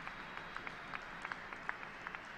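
Audience applauding, with individual hand claps standing out over a steady patter.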